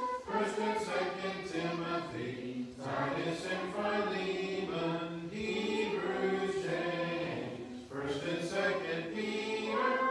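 A group of children reciting the books of the New Testament in unison as a sing-song chant, in phrases with short breaks between them, as a memory drill.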